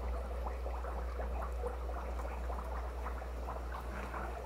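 Fish-room background of aquarium water faintly bubbling and trickling, a dense patter of tiny ticks over a steady low hum.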